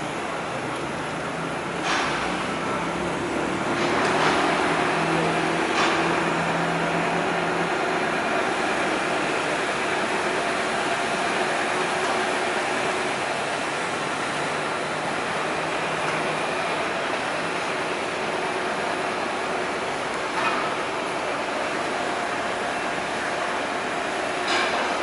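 Construction-site and city noise: a steady hum of engines and machinery, with a low drone through the first several seconds and a few short, sharp knocks scattered through.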